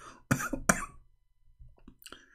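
A man's laughter trailing off in two short, breathy bursts, then near quiet with a few faint clicks.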